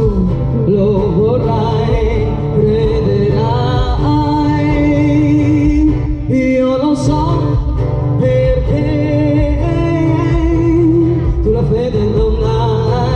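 A woman sings with an acoustic guitar through a PA, holding long, wavering notes over a steady low accompaniment.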